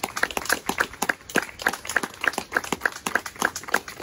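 A small group of people clapping, one pair of hands near and at a steady pace among a few others.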